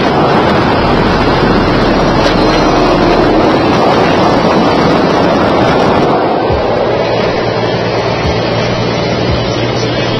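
Loud, steady wind rush and road noise from a semi-truck cab moving at highway speed, with the camera held at the open side window. A steady low hum from the truck comes through more plainly in the second half.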